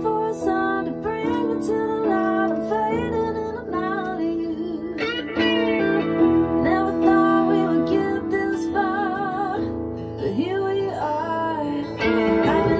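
Electric guitar solo with bent notes and wavering vibrato, played over a band backing track with sustained keyboard chords and bass.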